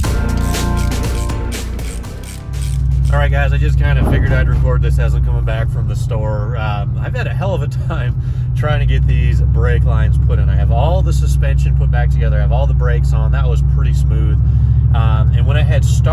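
Background music for the first couple of seconds, then a cut to a moving vehicle's cabin: a steady low engine and road drone under a man talking.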